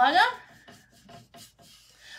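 A paintbrush brushing paint onto a wooden pumpkin cutout: several short, faint scratchy strokes.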